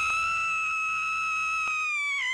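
A long, high-pitched wailing cry used as a cartoon sound effect, held at one steady pitch and starting to drop in pitch near the end.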